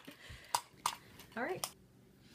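Two sharp plastic clicks from the small plastic toy washing machines of a candy kit being handled, followed by a short vocal sound rising in pitch.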